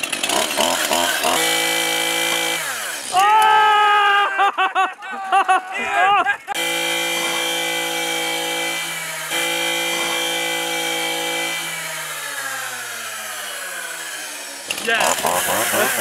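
Two-stroke Stihl chainsaw running at high revs, its pitch surging up and down for a few seconds, then holding steady. Near the end the pitch falls smoothly as the engine slows.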